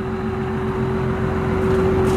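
Diesel engine idling steadily, a low even rumble with a constant hum over it.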